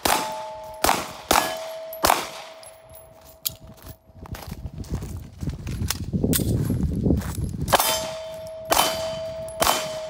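A 9mm Beretta 8000 Cougar pistol fires four shots in about two seconds, then three more near the end. Hit steel plates ring on in a steady tone after the shots.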